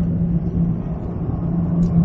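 Airliner cabin noise aboard an Airbus A330 in flight: a steady rumble of engines and airflow with a constant low hum underneath.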